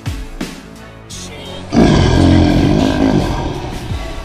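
Background music with a steady drum beat, then a lion's roar about two seconds in, loud and rough, tapering away over a second and a half.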